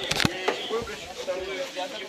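Voices of players calling out across the pitch, with a short, sharp click-like knock just after the start.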